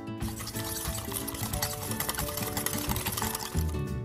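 Dry spice rub poured from a plastic bag into a bowl, a dense rapid rattle lasting about three seconds and stopping shortly before the end, over acoustic guitar background music.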